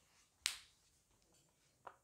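Two sharp clicks about a second and a half apart, the first the louder.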